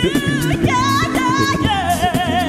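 An a cappella group singing: a female lead voice with wide vibrato over low sung bass notes and backing harmonies, with sharp vocal-percussion clicks keeping the beat.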